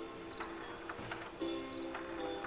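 Simple electronic melody from a baby swing's built-in music player: plain steady notes stepping from pitch to pitch, with short high notes repeating over them.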